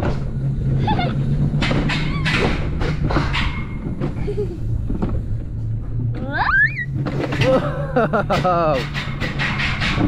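Excited voices, with a high rising squeal about six and a half seconds in, over a steady low hum and scattered knocks.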